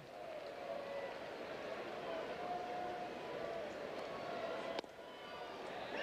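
Ballpark crowd murmur with scattered distant voices, and a single sharp pop about five seconds in.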